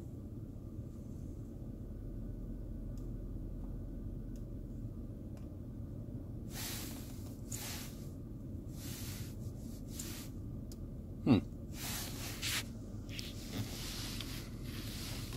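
Steady low rumble inside the cabin of an idling car, with a few soft rustles in the second half and a brief falling vocal sound, like a short 'hm', about eleven seconds in.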